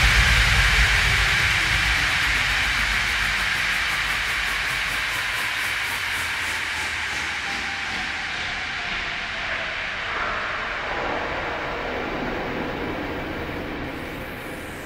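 Closing noise wash of an electronic dance track: a hissing sweep of filtered noise, left after the beat has stopped, fading out slowly with a faint falling pitch sweep through it.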